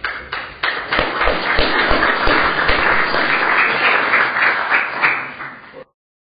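Audience applauding: a few scattered claps swell within about a second into steady applause, which cuts off suddenly near the end.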